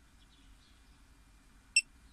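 A single short, high electronic beep from an OBD head-up display unit about three-quarters of the way through, over a faint low hum.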